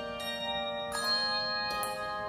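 Handbell choir ringing sustained chords, with a new chord struck about every second and each one ringing on into the next.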